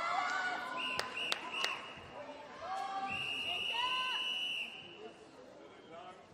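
Referee's whistle at a swimming start: three short blasts about a second in, then one long blast lasting about a second and a half. This is the signal for swimmers to step up onto the starting blocks. Crowd chatter in the hall dies down behind it.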